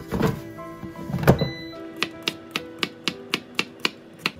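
An air fryer basket is pushed into the machine with a heavy clunk, and a second, louder thump follows about a second later. From about two seconds in come sharp, even clicks, about four a second, over background music.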